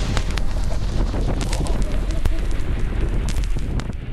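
Wind rushing over a moving camera's microphone, with a rumble and scattered crackles from snowboards scraping and chattering over firm halfpipe snow.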